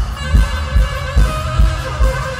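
Rock band playing live: a kick drum keeps a steady beat of about two and a half strokes a second, the loudest sound, with guitar and other instrument lines above it. The sound is a loud audience recording from the crowd.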